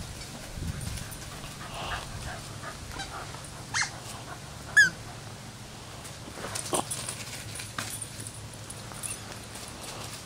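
A dog giving a few short, high-pitched cries. The loudest is a brief falling cry about five seconds in, with another just before it and fainter ones a couple of seconds later.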